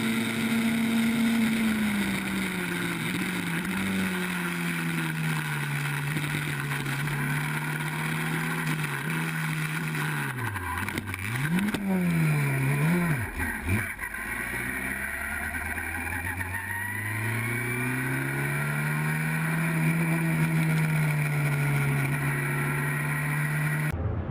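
Onboard sound of a small open-wheel formula race car's engine running at high revs, the note sagging slowly. About ten seconds in the revs drop sharply and flare back up twice as the driver backs off for cars crashing ahead. The engine then pulls back up to a steady note.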